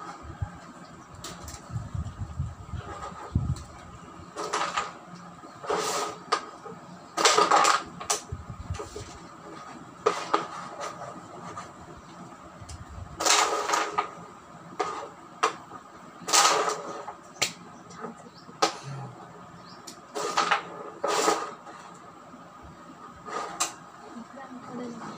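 Carrom being played on a wooden carrom board: about a dozen sharp clacks at irregular intervals as the striker is flicked into the coins and they knock against each other and the board's frame. Low thumps in the first few seconds.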